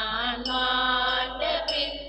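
A voice singing a slow hymn in long held notes, chant-like, with a bright chime struck twice over it.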